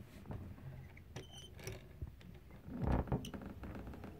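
Faint small clicks and scrapes from a hand-cranked wooden automaton mechanism as its lighthouse lamp is turned, with a brief high squeak about a second in and a dull bump from handling near three seconds.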